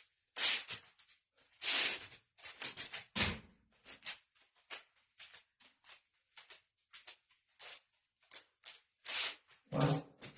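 A string of short swishes and scuffs as a pair of Krabi Krabong practice sticks is swung through a form and bare feet move and pivot on the floor. There is a low thump about three seconds in and a heavier sound near the end.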